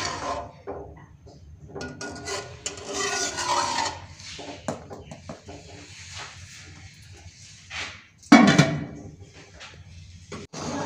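A metal slotted spoon scrapes and stirs inside a large aluminium pot of tomato-and-water broth. About eight seconds in comes a single loud clank with a short ring: the aluminium lid set on the pot.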